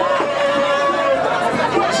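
A man talking, with one word drawn out near the start, over the chatter of a crowd.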